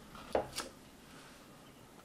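A quiet room with one brief soft sound about a third of a second in and a fainter tick just after, then steady faint room tone.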